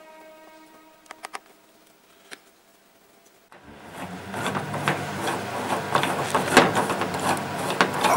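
Faint music and a few light clicks of wooden parts, then, a little past the middle, a loud, dense clatter starts: the wooden gears of a UGEARS Steampunk Clock model turned by hand, their teeth rattling and clicking against each other.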